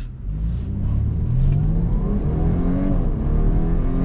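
Audi A5 Sportback's turbocharged four-cylinder engine accelerating hard from a pull-out, heard from inside the cabin. Its pitch climbs and falls back twice as the gearbox shifts up.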